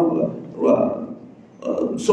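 A man's voice speaking in short phrases with brief pauses between them, quieter than the talk around it.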